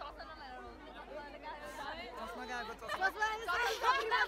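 Chatter of several young people talking over one another close by, with one voice leading, getting louder in the last second.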